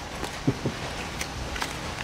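Spoons on bowls as two people eat: a few faint clicks over quiet room noise.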